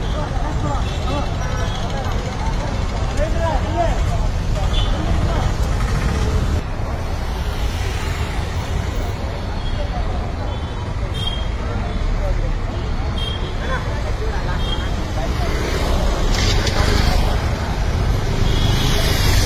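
Busy street ambience: steady traffic rumble with people talking in the background. The sound changes abruptly about a third of the way in, as at an edit.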